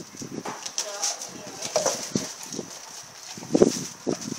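Rottweiler gnawing and tugging at a raw whole pork leg, the joint knocking and scraping on a tile floor in irregular bumps, with one loud knock near the end.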